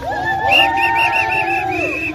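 A protest crowd singing or chanting together in long, drawn-out notes, several voices overlapping. A rapid high trill runs over it from about half a second in.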